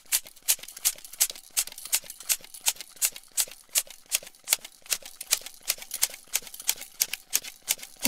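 Bicycle hand pump pumping air into a bicycle tyre: quick, even strokes, about three short hisses a second.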